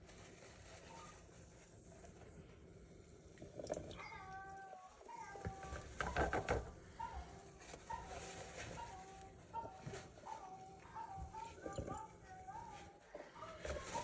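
Quiet room tone with a faint, high-pitched voice talking in short phrases in the background from about four seconds in, and a few light knocks around six seconds.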